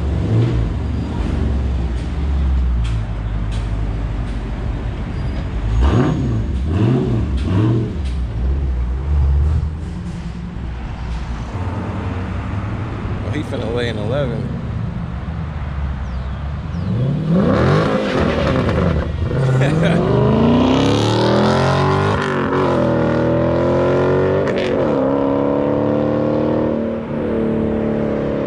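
Dodge Challenger Scat Pack's 392 HEMI V8 through a resonator-deleted exhaust: idling with a couple of throttle blips, then a full-throttle pull with the pitch climbing, two upshifts of the six-speed manual about 20 and 22 seconds in, and a steady, higher engine note after that.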